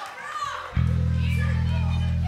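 Children in the audience calling and shouting between songs. About three-quarters of a second in, a steady low electric hum cuts in from the stage amplification, held on one pitch.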